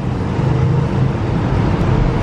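Steady road traffic on a busy city street: a continuous low rumble of engines and tyres.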